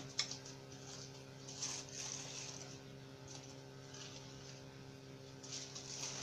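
Aluminium foil crinkling softly now and then as it is peeled open by hand, over a steady electrical hum.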